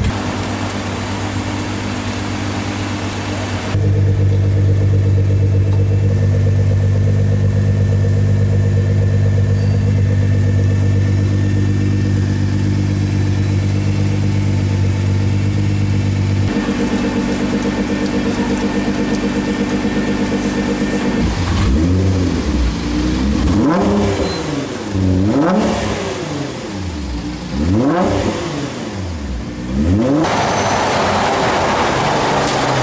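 Litchfield LM900 Nissan GT-R's twin-turbo 3.8-litre V6 idling steadily through its quad exhausts, then revved several times in the last third, the pitch rising and falling with each blip.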